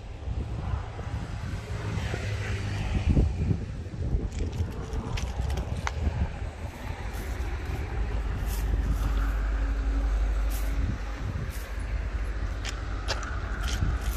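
Wind buffeting the microphone of a handheld phone: a low, uneven rumble that grows heavier for a few seconds past the middle, with scattered small clicks from handling.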